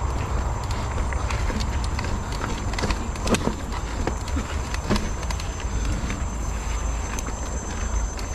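Mountain bike rolling over a stone-paved trail: irregular clattering knocks from the tyres and bike on the stones over a steady low rumble of wind on the microphone.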